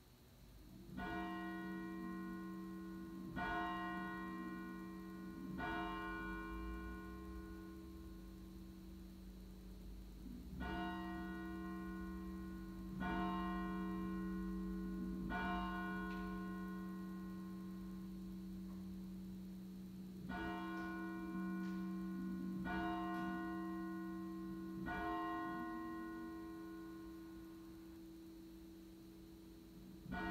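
A church bell struck in three sets of three strokes, a couple of seconds apart within each set and with a longer pause between sets. Each stroke rings on in a low hum that carries through the gaps.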